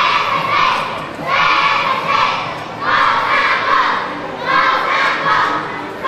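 A youth cheerleading squad shouting a cheer in unison, in loud rhythmic bursts a little more than one a second, with crowd cheering mixed in.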